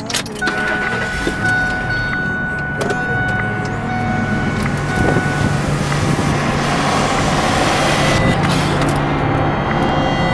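A sharp click as the ignition key is turned, then a car engine running, growing gradually louder.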